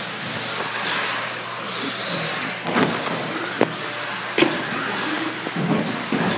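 Radio-controlled 4WD buggies racing on a carpet track, their motors and drivetrains whining as they pass. There are a few sharp knocks between about three and four and a half seconds in.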